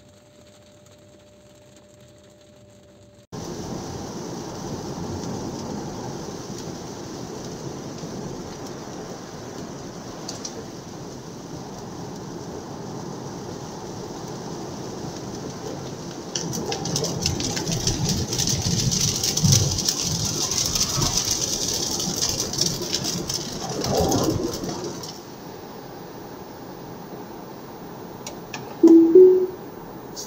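Road noise inside the cabin of an electric Tesla Model Y Performance driving on a wet road. It is quiet at first, and a steady tyre and road rumble starts about three seconds in. It swells into a louder hiss of tyres on wet tarmac through the middle, then settles, and a short two-note tone sounds near the end.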